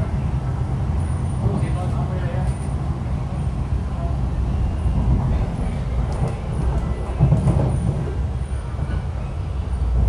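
Steady low rumble of an MTR East Rail Line R-Train, a Hyundai Rotem electric multiple unit, running on the line, heard from inside the passenger car.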